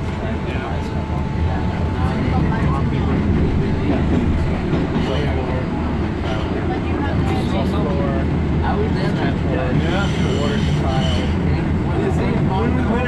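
MBTA Green Line light-rail train running through the subway tunnel, heard from inside the car: a steady, loud rumble of wheels on rails, with a brighter, higher noise about ten seconds in.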